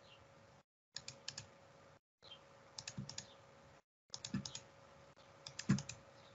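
Computer mouse and keyboard clicks at a desk: short bunches of three to five quick clicks about every second and a half, some with a soft low thud. The clicks come from repeating a CAD offset command, picking a line, then its side.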